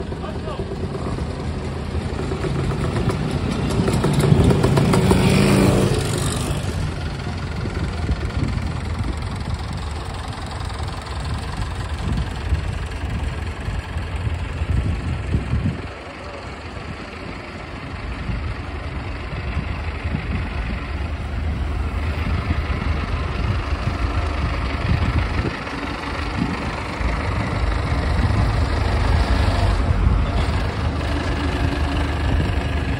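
Engines of a line of parked farm tractors and other vehicles idling, with a steady low running sound. About four to six seconds in, a louder engine swells, rising in pitch, then cuts off. People talk in the background.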